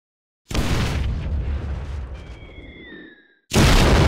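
Two added explosion sound effects. The first bangs in about half a second in and fades slowly, with a whistling tone gliding in pitch near its end. The second, louder explosion starts near the end.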